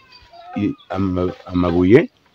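A man speaking in short bursts, his voice rising in pitch near the end.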